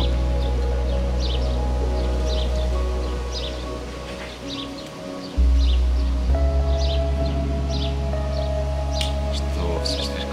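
Background music of deep held bass notes with sustained tones above, a new bass note coming in about five and a half seconds in, with small birds chirping throughout.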